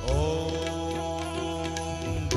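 A male voice slides up into a long held devotional sung note, with a steady harmonium drone and light tabla strokes beneath it.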